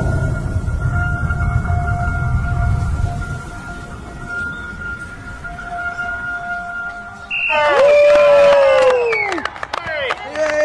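Advertisement soundtrack: two steady held drone notes over a low rumble, then, about seven and a half seconds in, a loud voice-like cry that glides slowly down in pitch for about two seconds.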